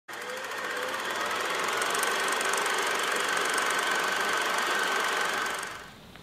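Film projector sound effect: a steady, rapid mechanical clatter over hiss that fades out near the end.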